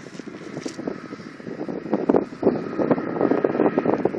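Gusty wind buffeting the microphone in irregular blasts, growing louder from about two seconds in, with a faint steady high tone underneath.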